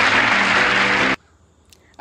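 Studio audience applauding with a band's play-off music under it, cutting off suddenly about a second in, followed by near silence.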